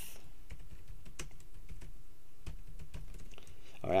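Typing on a computer keyboard: a quick run of irregular key clicks as a couple of words are typed.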